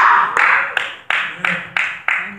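Rhythmic hand claps, about three a second, each strike ringing briefly in a reverberant room.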